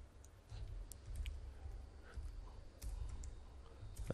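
Faint, irregular clicks of computer keyboard keys being typed, over a low rumble.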